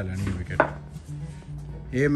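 Background music with low held bass notes, over a few short, sharp knocks.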